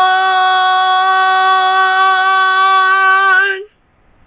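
A girl singing unaccompanied, holding one long steady note that cuts off suddenly about three and a half seconds in.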